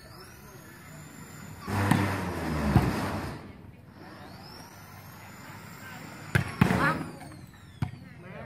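Sand volleyball rally with sharp smacks of hands striking the ball, three of them in the last two seconds, amid spectators' voices. A loud burst of noise lasting about a second and a half comes about two seconds in.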